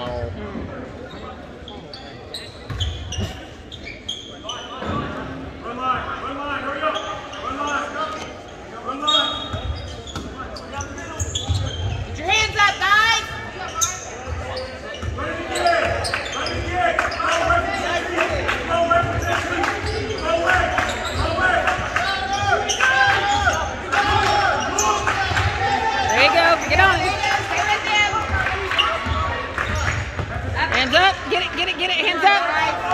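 Basketball bouncing on a hardwood gym floor during play, mixed with voices of players and spectators, in the reverberant space of a large gym.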